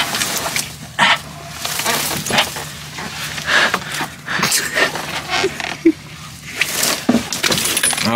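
Close rustling and brushing of clothing and dry cane stalks, with scattered clicks and knocks.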